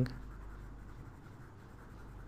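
Faint, steady scratching of a stylus moving across a drawing tablet as parts of a drawing are erased.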